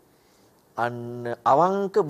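A man's voice speaking in long, drawn-out syllables, starting after a pause of almost a second.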